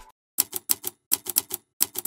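Typewriter key-strike sound effect: about a dozen sharp clicks in quick, uneven succession, after a brief silence at the start.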